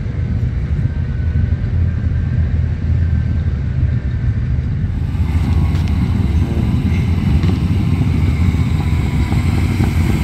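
Engines of classic cars and an old pickup truck rumbling steadily as they cruise slowly past; the sound changes about five seconds in, where the shot changes to a closer pass.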